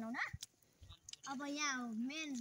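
Speech only: a man's voice talking, a short pause, then a drawn-out call of "yay" near the end.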